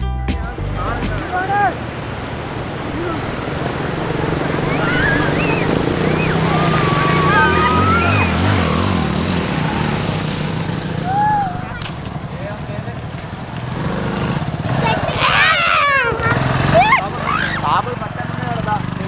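Several people's voices talking and calling out, over the steady running of a small motorcycle engine.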